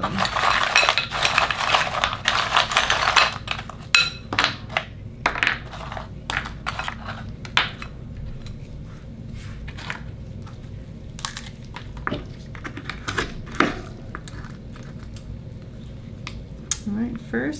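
Akoya oyster shells clattering out of a glass bowl onto a wooden cutting board, a dense rattle for about three seconds, followed by scattered clicks and knocks as the shells and tools are handled.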